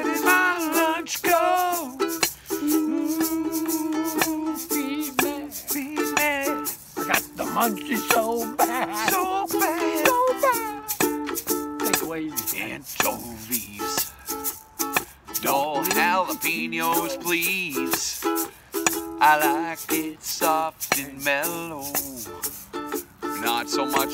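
Ukulele strummed with a small hand shaker keeping a steady rhythm, and two men singing along.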